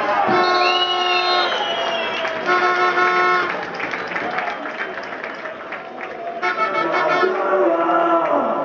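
Long, steady horn-like tones sound three times, about a second each, over the noise of a stadium crowd.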